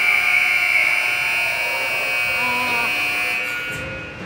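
Ice rink scoreboard horn sounding one long, steady blast that fades out near the end.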